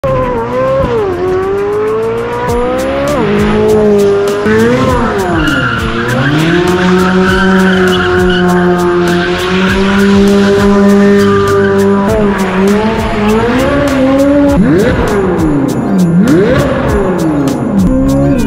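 Chevrolet Corvette C8 Z06's flat-plane-crank 5.5-litre V8 being revved hard while drifting, with tires squealing. Its pitch rises and falls over and over and is held high and steady for several seconds in the middle.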